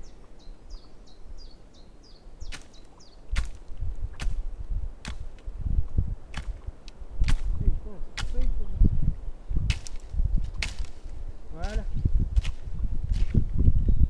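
A wooden stick swung hard and beaten against brambles: a run of sharp swishes and strikes, roughly one every half second to second, beginning about two and a half seconds in.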